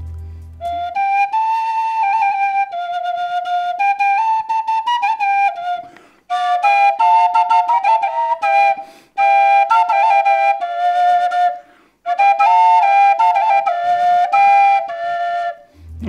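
A double svirel, two wooden Russian duct-flute pipes blown together, plays a short folk tune in two voices. The tune comes in four phrases with brief breaks between them.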